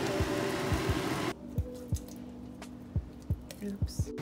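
Fettuccine bubbling in a pan of sauce, a steady hiss that stops suddenly a little over a second in. Background music with a steady bass beat runs throughout.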